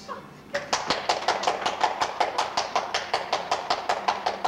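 Audience applause beginning about half a second in, with individual claps standing out sharply at about six a second.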